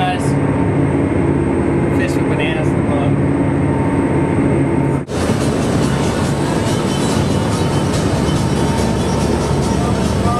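A steady low engine drone with a few brief voice fragments heard inside the cabin of a 68-foot Viking sportfishing yacht. About five seconds in it cuts abruptly to a loud rushing of wind and churning water as the boat runs at speed through its wake.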